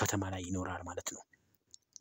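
A voice speaking for about a second, then a pause with a couple of faint clicks near the end.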